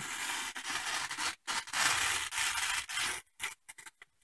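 A sharp knife blade slicing through stiff paper, a dry rasping in two long strokes with a short break between them, then a few small paper crinkles near the end.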